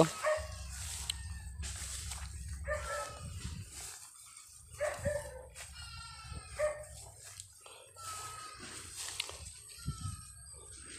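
Short animal calls, about six of them spaced a second or two apart, over a low steady rumble and a faint, thin, steady high tone.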